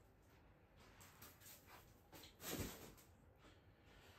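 Near silence: room tone, with one short soft noise about two and a half seconds in.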